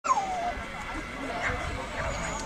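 Faint voices of people, with a short falling whine right at the start.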